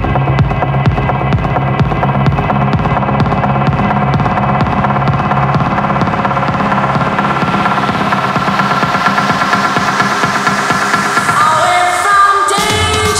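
Electronic dance music from a house/techno DJ mix: a steady kick beat with a bassline. In the second half the bass drops away and a rising sweep of noise builds toward the end, a build-up into the next section.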